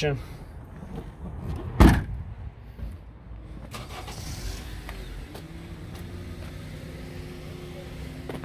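A single loud thump about two seconds in, typical of an SUV's rear liftgate being shut. From about five seconds in, a steady low hum.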